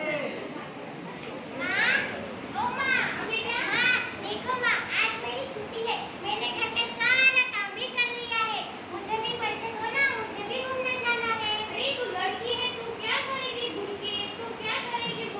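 High-pitched raised voices of young women speaking and calling out, at times several overlapping.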